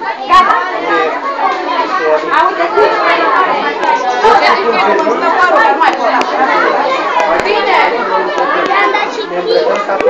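Many children's voices chattering at once, talking over one another.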